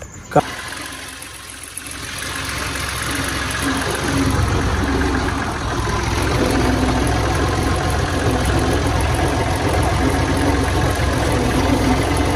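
Farm tractor's diesel engine running steadily as it drives along a field track, heard from the driver's seat; it fades in about two seconds in.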